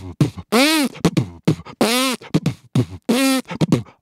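A man imitating axe chops with his mouth. Each chop is a sharp click or pop followed by a short vocal sound that rises and falls in pitch, three times, about every 1.3 seconds.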